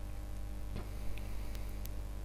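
A few faint, scattered clicks from a computer mouse as the page is scrolled, over a steady low electrical hum.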